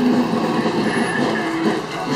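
A car engine running steadily amid busy open-air noise.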